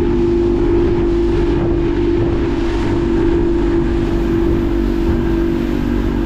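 Small boat's outboard motor running at a steady cruising speed, one even engine tone, with the rush of wind and wake.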